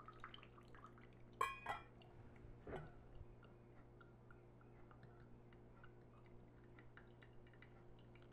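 Mostly near silence with faint dripping of coffee through a stainless steel mesh cone filter. About a second and a half in, a short ringing clink as the metal filter is set down on a ceramic mug, then a softer knock a little later.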